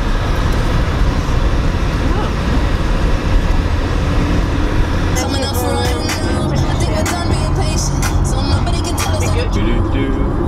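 Cabin noise of a Volkswagen car driving at motorway speed: a steady low road and engine rumble. From about halfway in, a voice, singing or talking, comes in over it.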